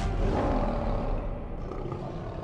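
A lion roar sound effect in a logo sting, a long rough roar that slowly fades as the last of the theme music dies away.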